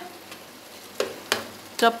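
Chicken, tomatoes and spices sizzling gently in oil in a pan, stirred with a wooden spoon, with two short knocks of the spoon against the pan about a second in.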